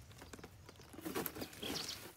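Faint rustling of leafy water-celery stems and roots being pulled and handled, a few soft scattered sounds in the second half.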